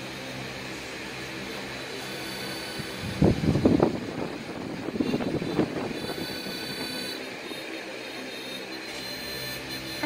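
A large electric fan running steadily with a low hum. Its air blast buffets the microphone in rumbling gusts about three seconds in and again around five to six seconds.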